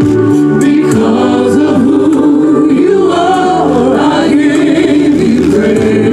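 A gospel praise team of several singers singing together into microphones, one lead voice sliding up and down in runs over steady held harmony notes.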